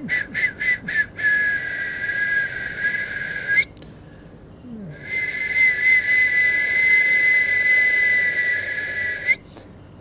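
A high whistle: a string of about six short whistled blasts, then two long steady notes, each ending with a slight upward flick.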